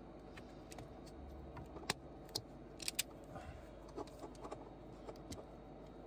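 Faint small metallic clicks and ticks of a screwdriver, cable lug and terminal hardware being worked at a blade fuse board, with a few sharper clicks about two to three seconds in.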